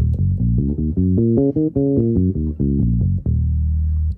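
Five-string electric bass playing an E-flat minor seventh arpeggio over two octaves: single plucked notes climb for about two seconds, come back down, and end on a held low E-flat.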